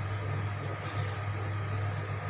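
A steady low mechanical hum with a faint hiss above it, unchanging throughout.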